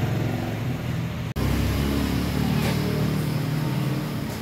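Refrigeration vacuum pump's electric motor running with a steady low drone, evacuating a newly installed split air conditioner's refrigerant lines through a service hose. The sound cuts out for an instant about a second in, then the drone comes back fuller.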